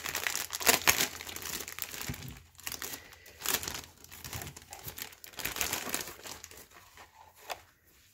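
Clear cellophane wrapping crinkling and crackling irregularly as hands pull the bag open and slide a paper craft item out, dying down near the end.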